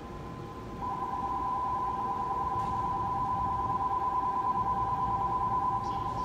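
Electronic station departure bell ringing on the platform: a steady two-tone trilling ring that swells louder about a second in and keeps ringing for about five seconds, signalling that the train is about to leave.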